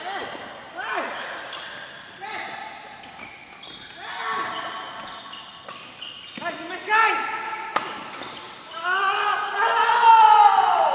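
Court shoes squeaking on the badminton court floor as players lunge and change direction, in short gliding squeals every second or two, with a longer one near the end. A single sharp crack of a racket hitting the shuttlecock comes about three-quarters of the way through.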